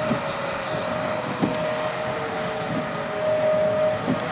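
Outdoor tornado warning siren sounding for a tornado warning: one steady tone that swells and fades, over a constant rush of wind and road noise.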